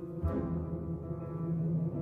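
Orchestral film score: low, sustained brass notes, with a single low drum stroke just after the start and the music swelling louder near the end.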